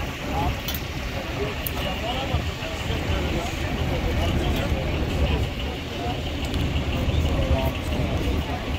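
Steady low rumble of idling vehicle engines, with voices talking faintly in the background.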